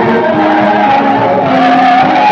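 Live gospel music from a church band, loud and steady, with long held notes.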